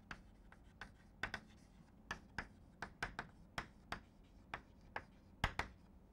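Chalk writing on a blackboard: faint, irregular short taps and scratches, about two or three a second, as the letters of a word are written.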